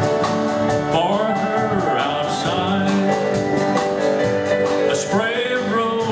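Live country band playing: strummed acoustic guitars over drums and keyboard, with a gliding lead melody line above them.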